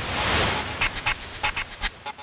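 Logo-sting sound effects: a noisy whoosh swells up over the first half second and fades, followed by a scatter of short, sharp electronic clicks.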